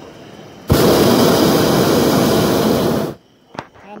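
Hot air balloon's propane burner firing in one blast of about two and a half seconds, starting and cutting off sharply, followed by a single click.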